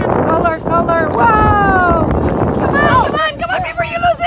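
Excited voices whooping and calling out without clear words, some calls sliding down in pitch, over the rumble of wind on the microphone.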